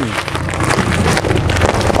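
Wind buffeting the microphone: a rough, steady rush over a low rumble.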